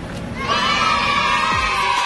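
A group cheer begins about half a second in and is held steadily, with many voices calling at once. A deep, falling bass hit from outro music comes near the end.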